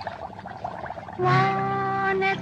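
A cappella female singing voice: a soft, rising vocal passage, then about a second in a loud, long held note at a steady pitch, with no instruments behind it.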